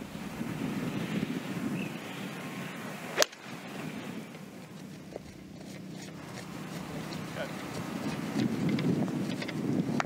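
A golf club strikes the ball off sandy desert ground about three seconds in: one sharp crack over a steady crowd murmur. Near the end the crowd noise swells as the ball finishes close to the pin.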